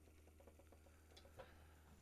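Near silence: faint room tone with a steady low hum and two faint short clicks just past the middle.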